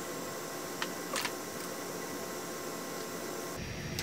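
Steady low hiss of room noise in a small room, with a few faint light taps and a brief brushing sound about a second in, from makeup brushes, sponges and compacts being handled.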